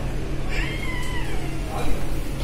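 A toddler's high-pitched squeal, one drawn-out call that slides down in pitch over about a second, over a steady low hum.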